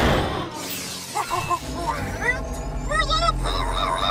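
Cartoon sound effects: a crash-like burst right at the start, then short wordless yelps and cries from a character over a steady low machine rumble.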